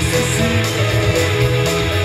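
Live rock band playing loud: distorted electric guitars over a heavy bass line, with regular cymbal hits keeping the beat.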